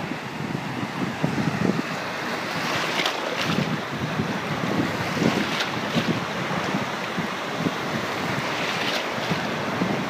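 Small Gulf of Mexico waves breaking and washing around in shallow surf, a steady rush of water with a few brief splashes, and wind buffeting the microphone.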